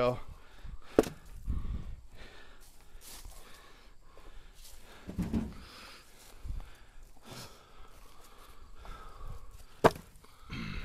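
Dry black locust firewood rounds knocking against each other and the truck bed as they are pulled off a pickup and stacked by hand: a sharp wooden clack about a second in and a louder one near the end, with duller thuds between.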